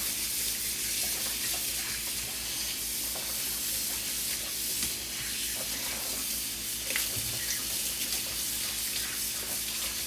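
A kitchen faucet running a steady stream of water onto a soapy multi-cup baking tin in the sink as it is rinsed out.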